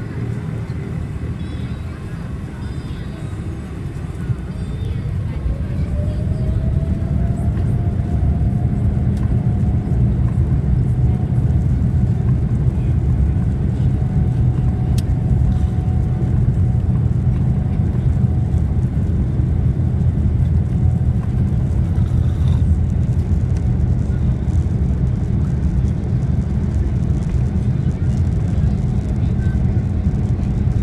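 Airliner's turbofan engines spooling up to takeoff power, heard inside the cabin: a deep, steady roar that grows louder about four seconds in, while a whine rises in pitch and then holds steady as the takeoff roll gets under way.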